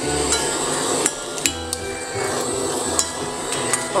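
Butane kitchen torch blowing as a metal spoon turns trout cubes in a stainless steel bowl, giving a series of sharp clinks against the metal.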